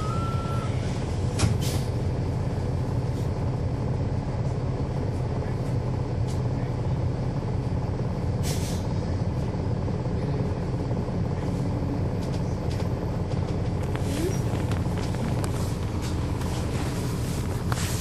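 Inside a NABI 40-SFW transit bus, its Cummins ISL9 inline-six diesel and ZF Ecolife six-speed automatic transmission give a steady, even low drone. An electronic alternating beep stops within the first second. There are a few sharp clicks and a short air hiss about eight and a half seconds in.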